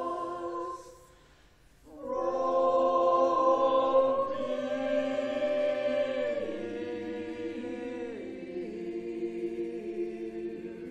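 A choir singing slow, held chords. About a second in the singing stops for roughly a second, then comes back louder, and the chords step down in pitch towards the end.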